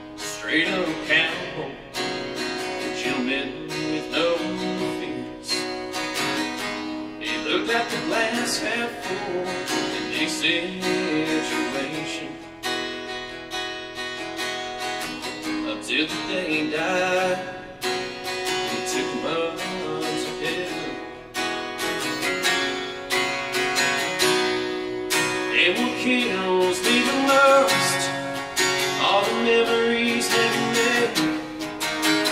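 Acoustic guitar strummed in a country song, with a man singing over it.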